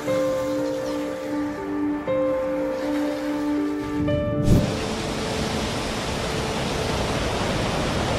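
Soft background music with long held notes, then, about halfway through, a steady loud rush of hurricane wind and rain takes over and the music fades beneath it.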